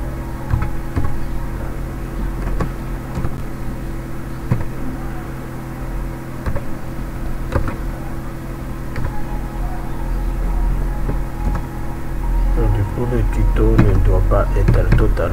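Computer keyboard keys clicking at an irregular pace as code is typed, over a steady low electrical hum. Voices come in near the end.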